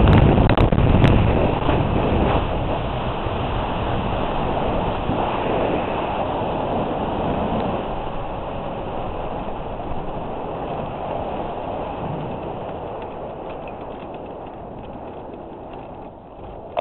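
Airflow rushing over the microphone of a weight-shift ultralight trike gliding in and rolling out on grass with its engine stopped, with no engine sound. The rush fades steadily as the trike slows down.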